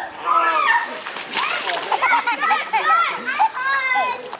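Water blown through a foam pool noodle spraying out and splashing into the pool for under a second, about a second in, surrounded by laughter and squeals.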